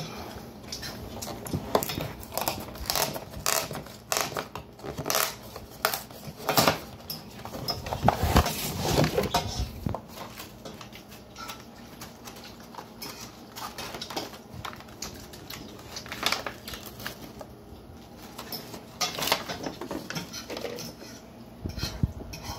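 A frozen lasagna's cardboard box and aluminium foil tray being handled: irregular crinkling, rustling and clicks of cardboard and foil, loudest about eight to nine seconds in.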